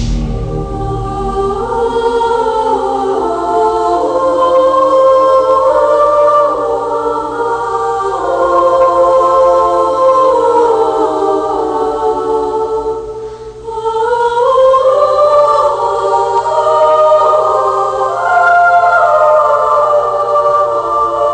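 Choral music: a choir singing slow, held chords that shift step by step in pitch. It thins out briefly about two-thirds of the way through, then swells again on rising notes.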